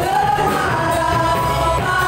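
Live contemporary worship band: several singers with microphones singing an Indonesian-language worship song in long held lines, backed by electric guitars, keyboard and drums.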